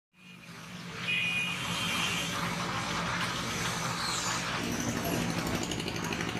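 Street noise with a motor vehicle's engine running steadily, fading in over the first second.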